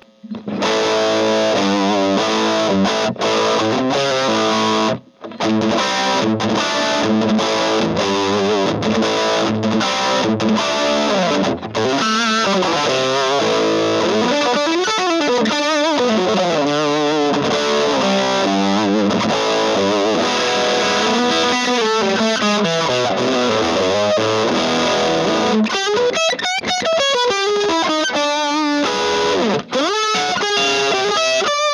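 Electric guitar played through an Orange Getaway Driver overdrive pedal with volume and gain turned fully up and the bite control held back, giving a heavily overdriven tone. The playing stops briefly about five seconds in, then carries on.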